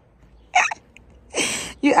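A baby hiccuping: a short catch about half a second in and a longer, breathy one just under a second later.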